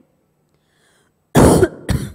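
A woman coughing twice near the end, a longer cough followed by a short one, after a moment of near silence.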